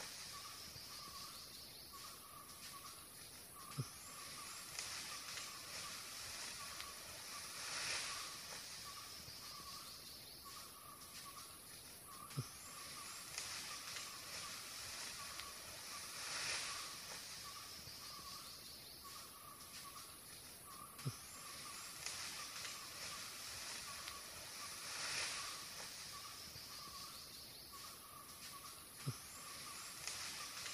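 Quiet forest ambience: a steady hiss with a faint, pulsing chirr, swelling every eight or nine seconds, with a short low thump at the same spacing each time, as if the same few seconds repeat. No call from the elephant is heard.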